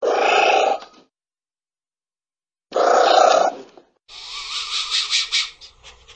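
An anteater giving two rough calls, each about a second long and some two and a half seconds apart. From about four seconds in, a rustling, scratching sound takes over.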